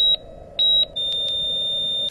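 Heart-monitor sound effect: short high electronic beeps about two-thirds of a second apart, then, about a second in, one long steady tone, the flatline.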